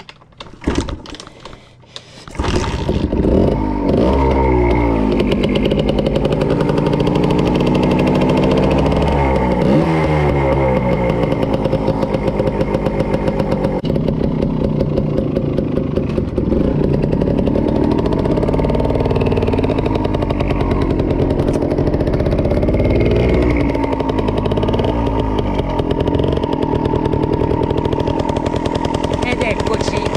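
A few knocks, then a small dirt bike's engine catches about two seconds in and keeps running loudly, revved up and down several times.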